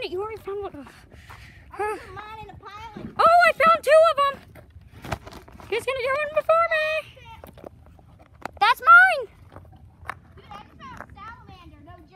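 High-pitched child's voice making wordless excited calls and squeals, some short and a few held for about a second, with scattered short clicks of handling.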